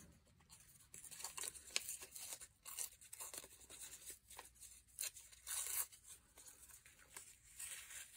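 Faint rustling and light scraping of paper scraps being handled and laid onto cardstock tags, in a string of short rustles with a longer one about halfway through.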